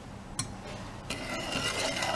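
Wooden spoon stirring sugar, water and golden syrup in a small stainless steel saucepan to dissolve the sugar, scraping softly on the pan, with one light knock about half a second in.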